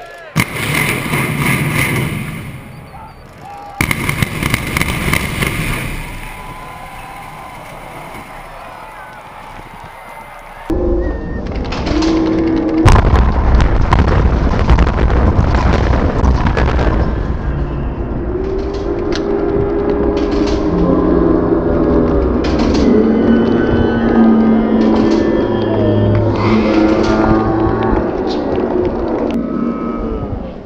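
Building implosion of a high-rise hotel tower: a rapid string of sharp bangs from the demolition charges about eleven seconds in, running into a long loud rumble as the structure comes down.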